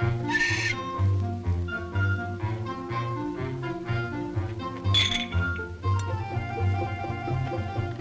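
Orchestral film-score music with a melody over a steady, repeating low bass line. Two short breathy bursts cut through it, one about half a second in and one about five seconds in.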